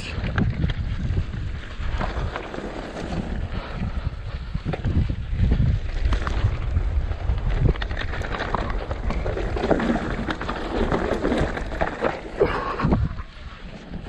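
Mountain bike descending a rough, rocky trail: tyres rolling and crunching over loose stones, with a constant rattle of small knocks from the bike, and wind buffeting the microphone. The noise eases off briefly near the end.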